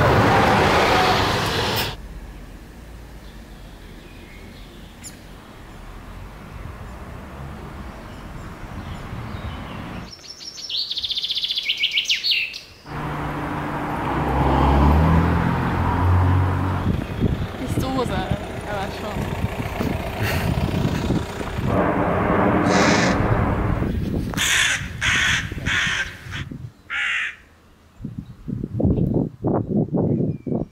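A bird calling, with a quick run of short calls near the end, among stretches of a person's voice and other outdoor sound.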